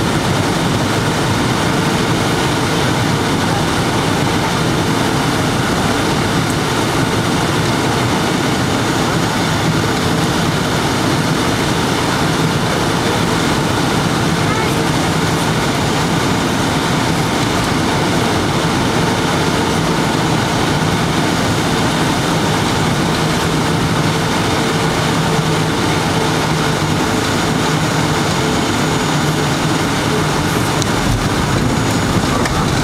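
Steady cabin noise of a Boeing 757-200 on final approach, heard from a window seat over the wing: a constant rush of jet engines and airflow with a few steady hums running through it.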